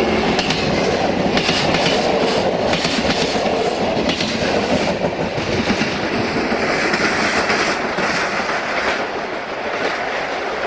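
Class 614 diesel multiple unit running past close by: a loud, steady rumble of wheels on rails with clusters of clickety-clack as its wheels cross rail joints.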